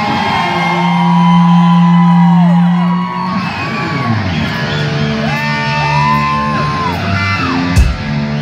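Rock band playing live, heard through a phone, with a lead electric guitar solo: bent notes slide up and fall back over a sustained low note that is loudest in the first few seconds, with a sharp crack near the end.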